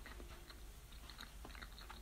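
A person quietly chewing a mouthful of breaded jackfruit burger with the mouth closed: faint, scattered small mouth clicks.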